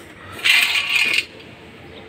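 Loose steel valve springs jingling and clinking against each other as they are picked up by hand, a metallic rattle lasting just under a second about half a second in.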